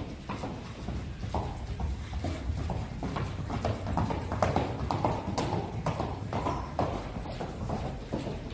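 Hoofbeats of a ridden Colombian Criollo horse in a quick, even, rapid gait on a dirt arena floor: a fast run of short knocks.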